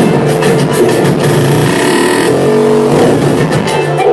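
Loud electronic music from a live laptop set over a club sound system, with a regular beat and a hissing swell near the middle.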